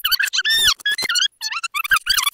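Video rewind sound effect: voices sped up into a rapid run of high, squeaky, garbled chirps.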